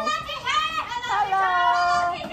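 Young children's voices calling out in drawn-out, sing-song tones.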